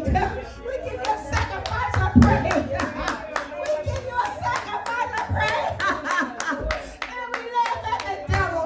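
Hand clapping in a quick, even rhythm, with a woman's voice calling out in praise through a microphone over it.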